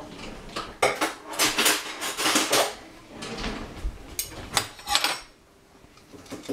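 A metal spoon clinking and scraping against a dish or container as ice cream is scooped: a sharp clink, a run of scraping strokes, then a few more clinks before it goes quiet near the end.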